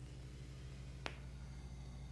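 Quiet room tone with a steady low hum, broken by a single short, sharp click about a second in.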